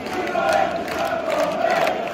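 Football crowd in a stadium stand chanting, many voices holding one drawn-out note together.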